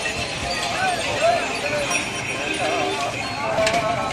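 Bullocks' hooves clopping as a pair draws a wooden cart past, over the chatter and calls of a crowd.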